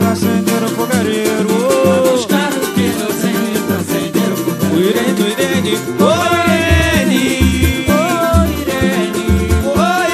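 A samba/pagode band playing: a dense, fast percussion rhythm with plucked strings, and a melody line rising and falling over it. Heavy bass notes come in strongly about six and a half seconds in.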